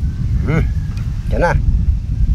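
Steady low rumble of wind buffeting the microphone, with two short vocal sounds from people, about half a second and a second and a half in.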